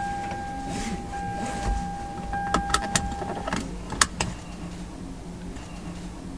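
Car seat belt being pulled across and buckled: a few sharp clicks, with the loudest latch click about four seconds in. Under the clicks runs a steady high tone that stops shortly before that click, and a low hum.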